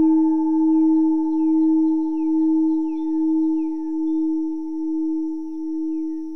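Singing bowl ringing with one low sustained note and a few higher overtones, its level pulsing slowly and evenly as it gradually fades.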